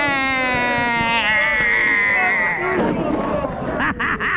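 A supporter's voice holding one long, slightly falling shouted note for nearly three seconds amid a crowd of football fans, then rougher crowd voices.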